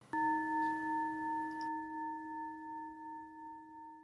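A bell struck once, ringing with a low tone and a few higher ones and slowly fading with a gentle wavering.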